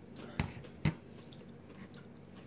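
Two short, sharp clicks about half a second apart, with faint room tone between.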